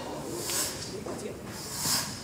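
A broom sweeping a stage floor: short swishing strokes about once every second and a half.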